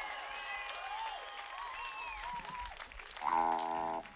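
Audience applauding, with the band playing softly underneath. Near the end a single note is held steady for under a second.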